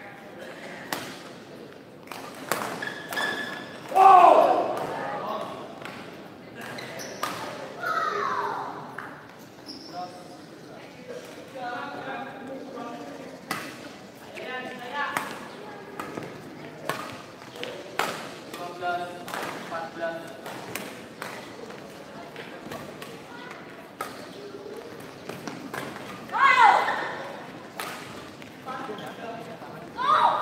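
Badminton rally in a sports hall: rapid racket strikes on the shuttlecock and footwork on the court. A few short loud shouts come through, the loudest about four seconds in and again near the end.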